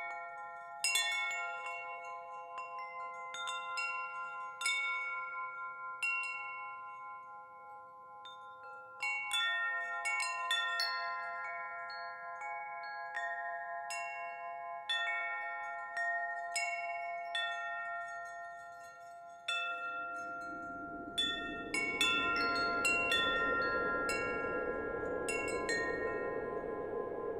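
Chimes struck at irregular intervals, each strike ringing on several fixed pitches that overlap and slowly fade. About twenty seconds in, a soft rushing noise comes in beneath the ringing and continues.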